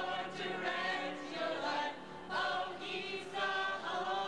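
A group of voices singing together in chorus, holding and changing notes in a lively tune.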